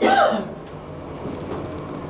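A person coughs, a rough throat-clearing burst that ends about half a second in. A low, steady background hum follows.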